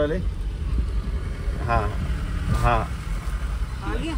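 Steady low engine and road rumble heard from inside the cabin of a moving Maruti Suzuki A-Star, with two short spoken sounds in the middle.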